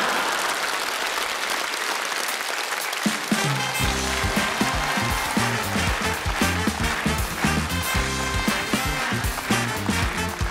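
Studio audience applauding, then about three seconds in a live band of bass guitar, drums and electric guitar strikes up an upbeat tune with a steady beat over the applause.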